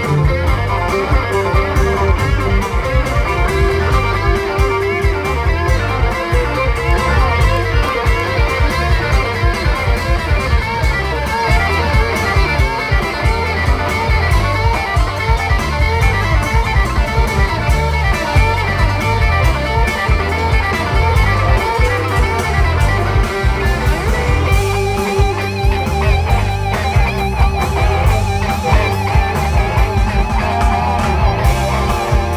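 Live blues band playing loudly: electric guitars over bass guitar and drums keeping a steady beat.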